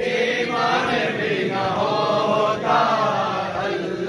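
A group of men chanting a noha, a Shia mourning lament, together in a crowd, their voices holding long wavering notes.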